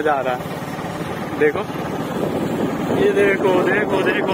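Motorcycle engine running steadily on the move, a low pulsing drone, with a man's voice yelling in long, wavering calls at the start and again near the end.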